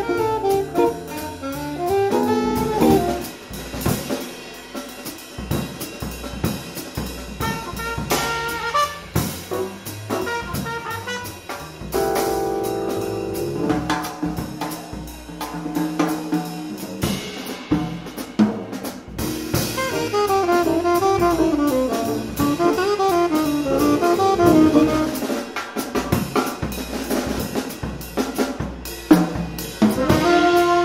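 Student jazz band playing live: saxophone melody lines over a swinging drum kit, with upright bass and keyboard, and several notes held together as a chord about twelve seconds in.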